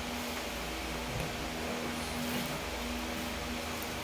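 Steady hiss and low hum of an electric fan running.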